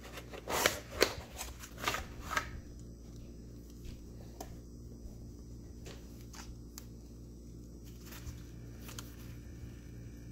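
A cardboard box scraping and rustling in a few quick strokes over the first couple of seconds as a small spellbook is slid out of it, followed by quieter handling of the book with a few light clicks and taps.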